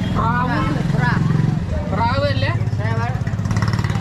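People talking over the steady low drone of an engine running.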